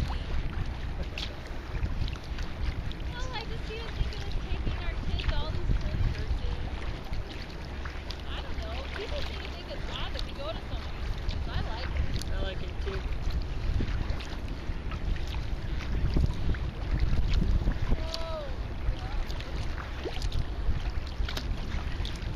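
Wind buffeting the microphone with a heavy, uneven rumble, over water slapping and splashing against a kayak as it is paddled through choppy water.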